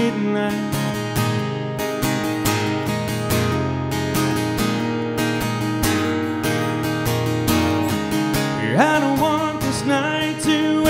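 Acoustic guitar strummed in a steady rhythm under a live country song. A man's singing voice comes back in near the end.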